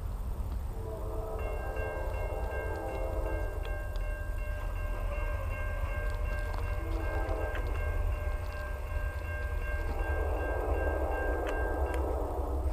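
Railroad crossing bell ringing steadily while the crossing gates lower, and falling silent just before the end as the gates come down. Under it a distant diesel locomotive horn sounds in long blasts for the approaching train, over a low rumble.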